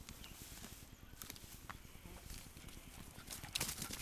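Faint, scattered crackling and rustling of dry leaf litter and twigs under a small dog's paws close to the microphone, with a short flurry of crackles near the end.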